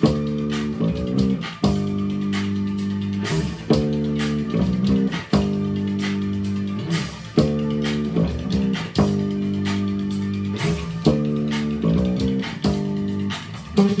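Electric bass guitar playing a driving line over a pop-rock backing track with drums and sustained chords. The full band comes in loudly at the start, and the phrase repeats every couple of seconds.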